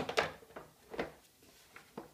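Hard plastic knocks as the Clek Foonf's rear-facing base is handled and fitted against the car seat's plastic shell: a few short clunks about a second apart.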